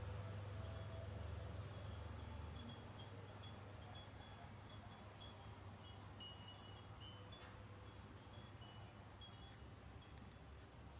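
Faint, scattered high tinkling of chimes over a low steady hum that fades out about three seconds in.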